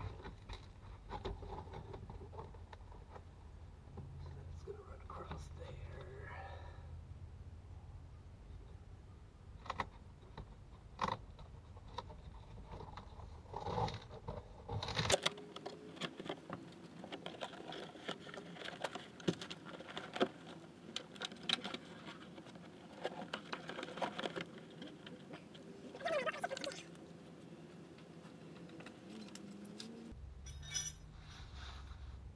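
Scattered clicks, scrapes and jangles of hand work with tools inside a stripped-out VW Beetle, busier in the second half. The background changes abruptly about halfway through.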